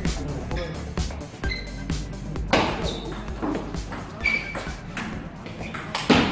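Table tennis rally: the ball clicking sharply off paddles and the table at an irregular rally tempo, over voices and background music.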